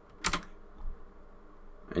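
Computer keyboard keystrokes: one sharp tap about a quarter second in and a fainter one near the one-second mark, entering a value.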